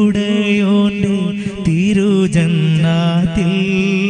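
A man singing a Malayalam Islamic devotional song into a microphone, holding long notes with wavering ornaments.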